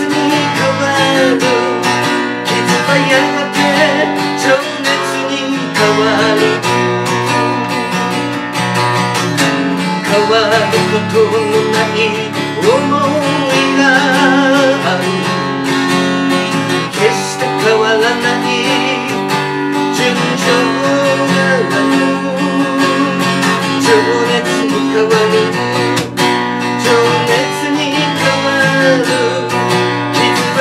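Steel-string acoustic guitar strummed steadily, with a wavering lead melody line above it.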